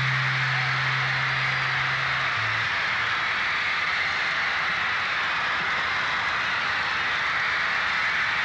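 Large arena audience screaming and cheering steadily once the song has ended, a dense high-pitched wall of crowd noise. A low held note from the band dies away about two and a half seconds in.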